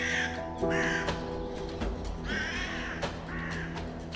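Crow cawing in two pairs of harsh caws, over background music with sustained held notes.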